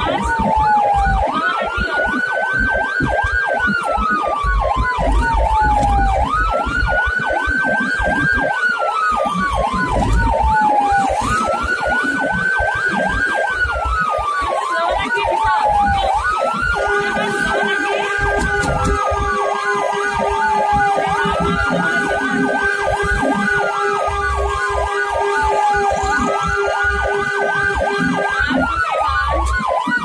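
Ambulance siren wailing in a repeating cycle about every five seconds: a quick rise, a short hold at the top, then a slow fall. A steady lower tone sounds alongside it for about ten seconds in the second half.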